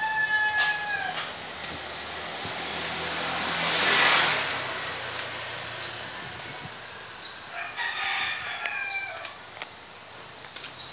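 A rooster crowing, with one long crow tailing off about a second in and another crow near the end. Between them a rushing noise swells and fades, loudest at about four seconds.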